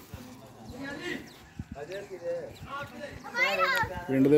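Children's voices chattering and calling out, with a louder high-pitched call shortly before the end.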